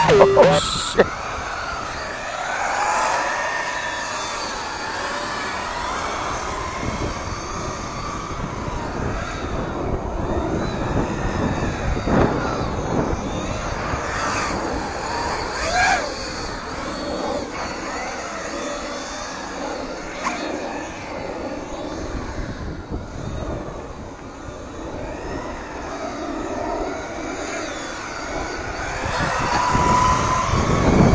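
Electric motor of an RC truck whining as it speeds up and slows down, the pitch rising and falling over and over, with a louder pass about halfway through.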